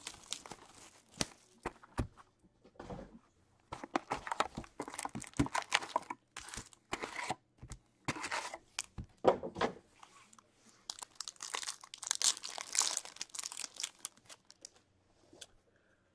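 Plastic shrink wrap and foil trading-card pack wrappers crinkling and tearing as a hockey card box is unwrapped and its packs ripped open, in irregular rustling bursts with scattered sharp clicks.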